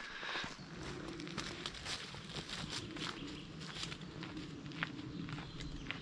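Footsteps of a hiker hurrying along a dirt forest track, a brisk run of soft crunching steps.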